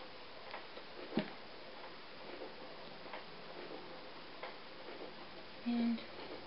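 Small, irregular clicks and taps of hands working yarn over the plastic pegs of a knitting loom, with one sharper click about a second in. Near the end comes a short low hum, the loudest sound.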